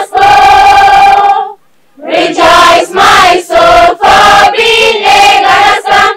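A school choir of young mixed voices singing the school song unaccompanied. A long held note ends about a second and a half in, followed by a brief silence, then a new run of short sung phrases.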